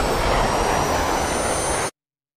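A dense, steady rumbling roar from the edit's soundtrack, a sound effect with faint thin high whines slowly rising above it. It cuts off abruptly just before the end.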